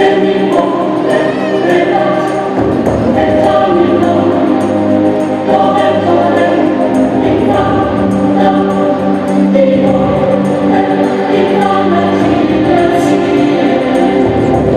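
Choral music: a choir singing long, held chords that change every second or two.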